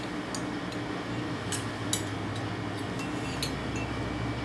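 A few faint, light clicks as metal tweezers handle a small copper piece, over a steady low hum.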